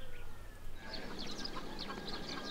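Birds calling: many short, high calls crowding in one after another from about a second in.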